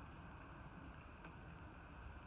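Near silence: faint steady background noise, mostly a low rumble.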